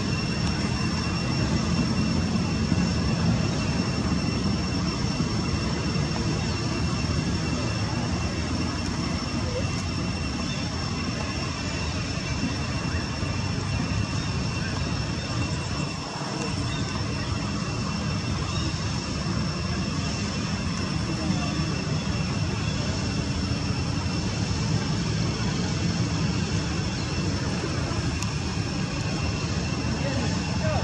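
Steady outdoor background noise, an even rushing sound with a constant high-pitched whine held over it and no distinct events.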